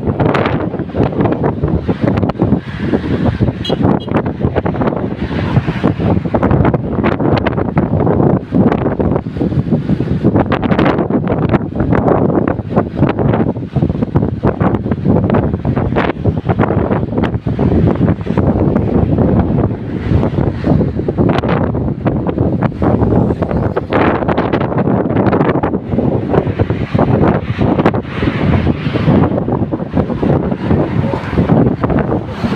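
Heavy, gusty wind buffeting the microphone of a phone filming from a moving vehicle, over steady road and engine noise.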